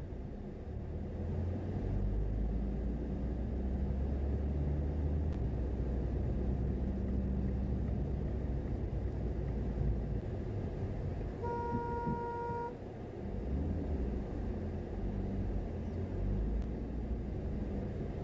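Car driving along city streets, a steady low engine and road rumble. A little past the middle, a car horn sounds once for about a second.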